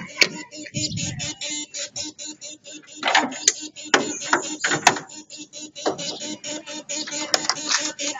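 A Fiat Tipo's engine-bay relay chattering with the ignition on and the engine not cranked, a rapid, even clicking. It switches on and off in step with the flashing injection warning lamp, a fault the owner suspects lies in the fuel injection or fuel pump circuit. A few louder knocks come in the middle.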